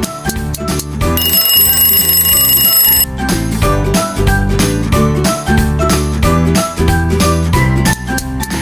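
Upbeat background music with a steady beat; about a second in, an alarm-clock ring sounds over it for about two seconds, signalling that the quiz timer is up.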